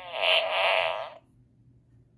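Gemmy Animated Fart Guy toy playing a recorded fart sound effect through its small built-in speaker, a buzzing, wavering blast lasting about a second that cuts off abruptly.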